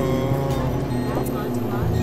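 Dense layered experimental electronic music: steady low drones and held tones, with short voice-like gliding sounds over them in the middle. A deeper drone comes in near the end.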